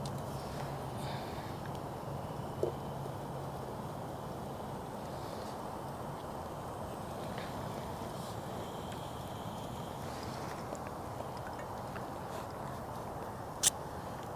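MSR Reactor backpacking canister stove burning steadily under a pot of broth, an even hiss, with a light click about a third of the way through and a sharper one near the end.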